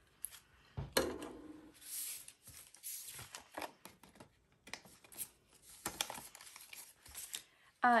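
Clear plastic cash envelopes and polymer banknotes being handled: irregular crinkling and rustling with scattered small clicks as the envelopes are flipped through and pressed flat.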